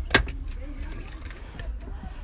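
Low steady rumble of a car cabin, with one sharp click just after the start.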